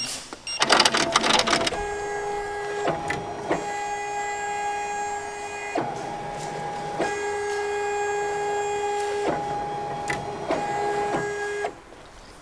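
Ricoma multi-needle embroidery machine tracing the design outline: its hoop-drive motors move the hoop with a steady electric whine, broken by brief clicks and pauses every second or two as the path changes. A quick run of clicks comes first as the trace starts.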